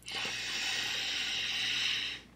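One long, steady breath of air through a person's mouth, hissing for about two seconds, as a taster breathes over a sip of strong whisky.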